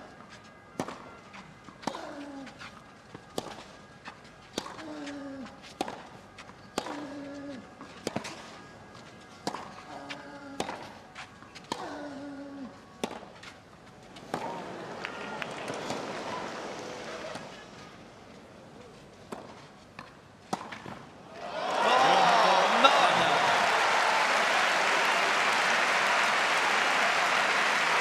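Tennis rally on clay: racket strikes on the ball about once a second, many of them followed by a short falling grunt from a player. A crowd murmur rises briefly midway. About three-quarters of the way through, the rally ends and loud crowd applause and cheering take over.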